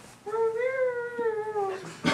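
A person making one long, high-pitched squeaky vocal sound that rises a little and then falls, lasting about a second and a half: a mock reply voiced for a pet hermit crab.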